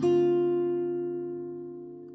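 Acoustic guitar playing a D minor 7 chord picked one string at a time. The last note is struck right at the start, then the whole chord rings on and slowly fades away.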